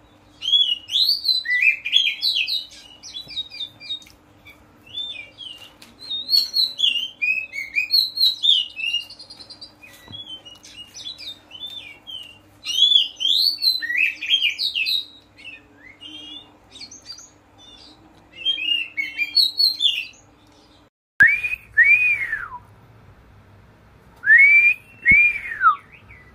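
Oriental magpie-robin (kacer) singing a loud, varied whistled song in phrases of a few seconds each, the full open 'ngeplong' song used as a lure to set off other kacers. After a sudden cut near the end comes a different bird's few clear whistles, each rising then falling in pitch.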